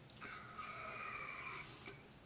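A person drawing in air at the neck of a small plastic bottle of pomegranate juice: one steady hissing intake with a faint whistling tone, lasting nearly two seconds and stopping abruptly.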